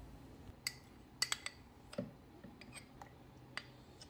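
A metal spoon scraping and clicking faintly against a bowl as thick condensed milk is scraped out into a plastic jug: a handful of light, irregular clicks.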